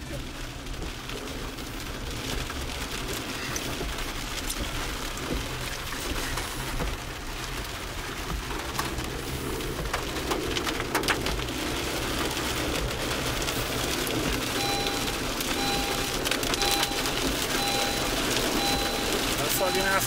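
Rain falling on a car's windshield and roof, heard from inside the moving car, with many small drop clicks over a steady low road rumble. Over the last five seconds a run of short, evenly spaced beeps, about one and a half a second, comes in.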